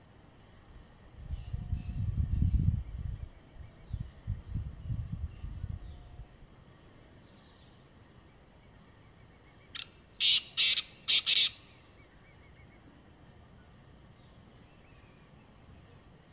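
A black francolin calling once, about ten seconds in: a short click, then four loud, harsh notes in quick succession over about a second and a half. Earlier, for several seconds, there is a low rumble.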